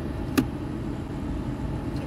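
Steady low hum inside the cabin of a 2007 Dodge Nitro, from the idling engine and the heater blower running, with a single sharp click about half a second in.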